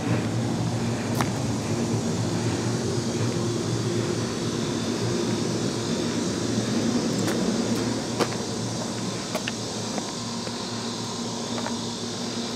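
Central air conditioner's outdoor unit running, a steady machine hum with a low buzz, with a few light clicks over it.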